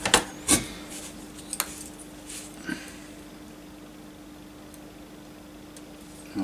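A few light clicks and taps from handling small modelling tools and a plastic model part during the first three seconds, then only a faint steady hum.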